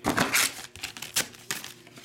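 Foil-wrapped trading card packs being handled and set down in a stack: a crinkly rustle, then a few light clicks and taps.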